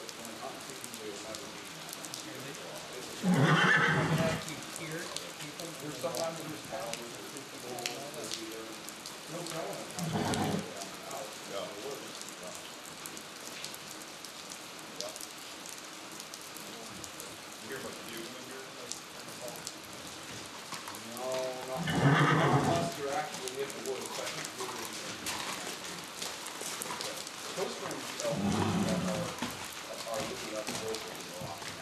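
A horse whinnying loudly four times, each call about a second long, the longest and loudest near the start and about two-thirds of the way through. Steady rain runs underneath.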